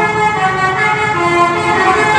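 Street entertainment music: a loud, reedy, horn-like melody of held notes that step up and down in pitch.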